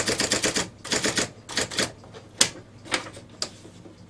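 IBM Correcting Selectric II electric typewriter mechanism clattering in a fast run of repeated clicks, about a dozen a second, then two shorter runs and a few single sharp clacks, over the faint hum of its running motor, as paper is being put in.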